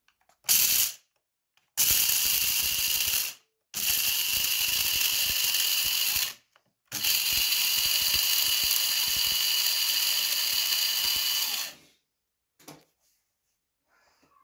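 Bosch electric blade coffee grinder grinding whole coffee beans in pulses: a brief blip, then three runs of about one and a half, two and a half and five seconds, each a steady high-pitched whir. The grinding sounds very satisfying.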